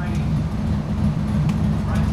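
Motorcycle engine idling with a steady, low, pulsing rumble.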